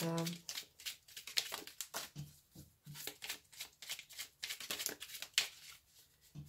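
A deck of oracle cards being shuffled by hand: a dense, irregular run of papery clicks and flicks from the cards.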